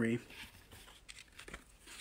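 Faint rustling and a few light clicks of ribbon being handled and laid into a plastic bow-making tool.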